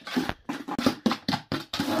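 A rapid, uneven run of sharp knocks and scrapes, several a second, from handling on the building site.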